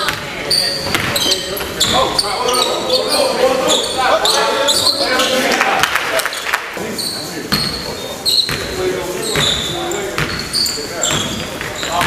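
A basketball bouncing as it is dribbled on a gym's hardwood court, with short high-pitched sneaker squeaks on the floor scattered throughout.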